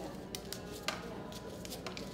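A few faint, sharp clicks and crackles spread over the two seconds: gloved hands snapping the thin excess edges off moulded chocolates.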